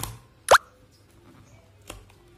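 Plastic blister pack of an HP 682 ink cartridge being pried open: one sharp pop about half a second in, with softer plastic clicks at the start and near the end.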